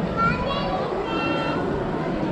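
Children's high voices calling and chattering over the general murmur of a crowd of passers-by.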